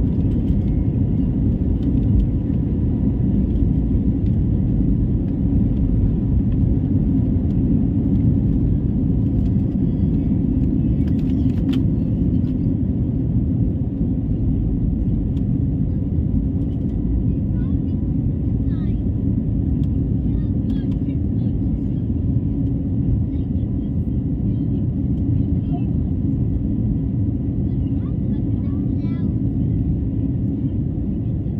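Airbus A320-family airliner cabin noise during takeoff: the jet engines at takeoff power make a loud, steady deep rumble as the plane rolls down the runway and climbs out, easing slightly partway through the climb.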